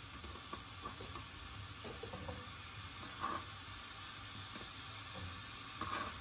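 Onion slices sizzling quietly in melted butter in a skillet, with a few light clicks of a plastic spoon stirring against the pan.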